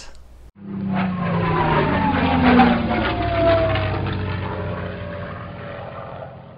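Propeller airplane flying past, its engine rising to a peak and then fading away as its pitch slowly falls.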